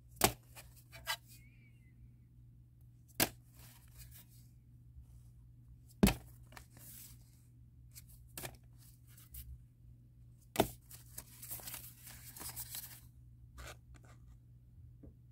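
Vinyl 45 rpm singles being handled one after another: a sharp clack of record against record about every three seconds, lighter ticks between, and paper sleeves rustling, with a longer rustle near the end.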